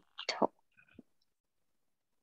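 A person's voice briefly and softly whispering or murmuring a word in the first half second, followed by near silence.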